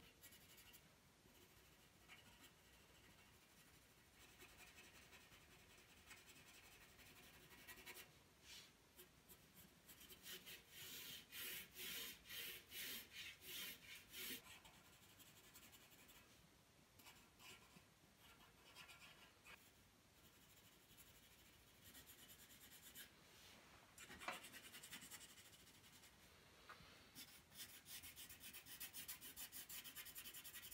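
Faint scratching of a darker drawing pencil shading on paper. About ten seconds in comes a run of back-and-forth strokes, about two a second; near the end the strokes are quicker and closer together.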